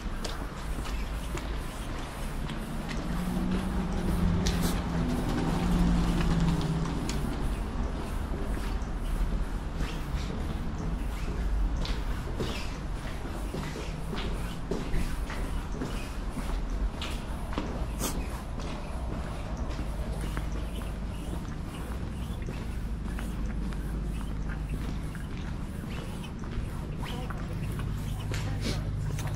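Footsteps on a paved walkway, heard as many short clicks over a steady low rumble of city traffic.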